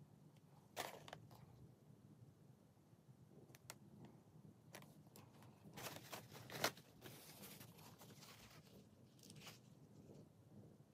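Near silence with faint handling noises: light taps and soft rustles as a waterslide transfer is worked onto a painted model part with a pointed tool and tissue. The loudest tap comes just past the middle.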